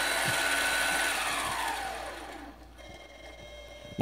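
Mini lathe spindle motor and drive running fast, then winding down to slow speed after being commanded from 1000 to 100: about a second in, its whine falls steadily in pitch and fades, settling to a faint quiet run from about two and a half seconds in.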